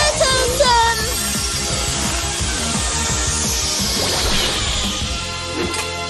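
Animated series soundtrack for a magical summoning transformation: electronic music with a steady beat, sparkling rising chimes near the start, and a long falling sweep through the middle.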